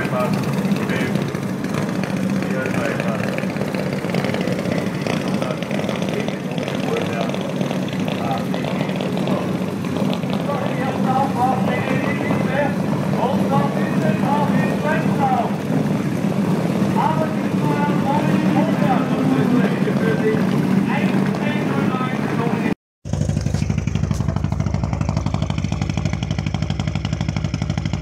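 Rally cars idling steadily, with people talking in the background. Near the end the sound drops out for a moment, and a different sound with an even pulse follows.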